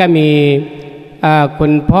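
Only speech: a Buddhist monk's voice over a microphone, reading out names, drawing out the first syllable at a steady pitch for about half a second, then a short pause before he goes on.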